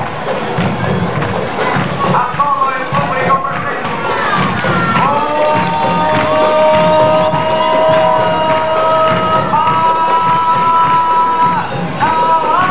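Carnival comparsa music with a steady pulsing drum beat, voices at first and then long held notes that shift pitch once, over a cheering crowd.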